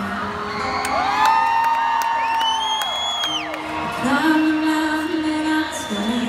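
Live acoustic song: a woman singing over a strummed acoustic guitar with the crowd singing along, and whoops from the audience over the top.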